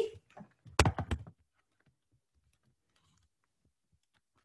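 Handling noise as the recording device is moved and set down on a table: three quick knocks about a second in, then near silence.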